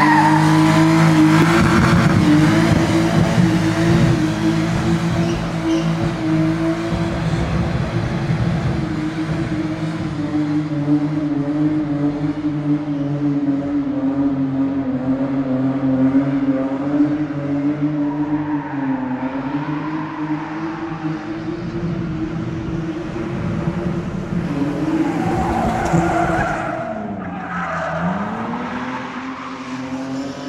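BMW E34 525's straight-six engine held at high revs through a long burnout, rear tyres spinning and squealing on concrete. The revs dip and climb back twice in the latter part.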